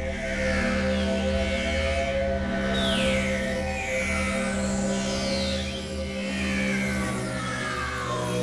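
Novation Supernova II synthesizer playing experimental electronic music: a sustained drone of steady low tones with a pulsing bass, overlaid by high whistling tones that glide downward, repeating every second or two.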